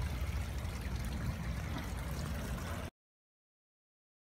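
Pond water trickling and lapping around a hand held at the surface, over a low rumble; the sound cuts off suddenly nearly three seconds in.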